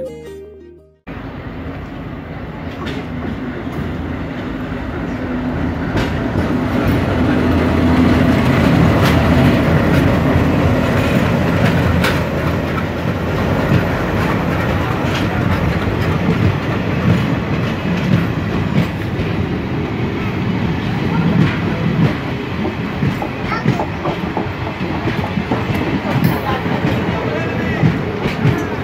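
Blue passenger coaches of an Indian Railways train rolling past at close range: a steady rumble with wheels clacking over the rail joints, growing louder over the first several seconds.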